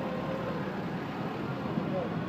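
Cars driving past on a road close by, with people's voices in the background.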